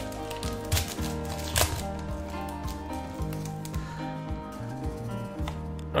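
Foil wrapper of a Pokémon trading card booster pack crinkling and tearing as it is opened, with short crackles, a few sharper ones about a second and a half in. Soft background music plays underneath.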